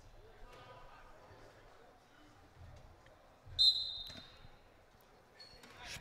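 Gym ambience with a basketball being bounced on a hardwood court, and one short, high referee's whistle blast about three and a half seconds in.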